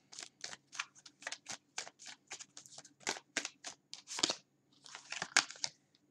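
A deck of tarot cards being shuffled and handled by hand: a quick, uneven run of light card snaps and rustles, several a second, with a brief pause near the end.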